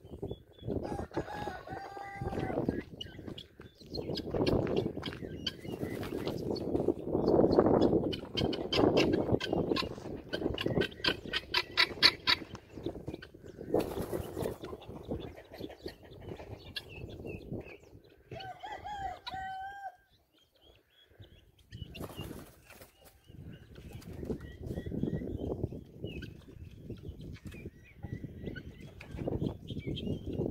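Helmeted guinea fowl calling: short harsh notes, a fast rattling chatter a little before the middle, and a brief pitched call about two-thirds through. Bursts of low rustling noise sound between the calls.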